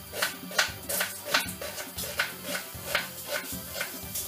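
Kitchen knife cutting through an onion and striking a wooden cutting board, about two to three cuts a second, over background music.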